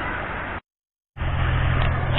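Steady noise of waves breaking on the shore and wind on the microphone. It drops out completely for about half a second just over half a second in, then comes back with a low steady hum under the noise.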